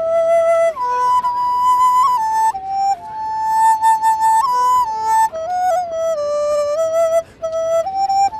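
Solo bamboo flute playing a slow melody: one line of held notes that step up and down, with short slides and bends between them.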